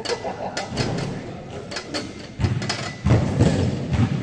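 Scattered sharp knocks with heavier thuds near the end: a person dropping from a pull-up bar and stepping in shoes across a wooden gym floor.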